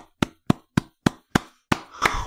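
One person clapping alone, close to the microphone: single, sharp, evenly spaced claps, about three and a half a second, a standing ovation.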